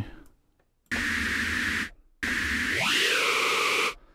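White noise played through Native Instruments' Kodiak Morph Filter, a formant filter in two-pole mode, in Reaktor Blocks. It sounds as two held notes of filtered hiss, about a second and a second and a half long. In the second note a resonant band glides upward and then settles.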